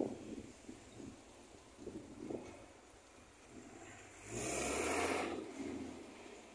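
Road traffic, with a minibus passing close by about four seconds in: a loud rush of engine and tyre noise with a low rumble, lasting just over a second.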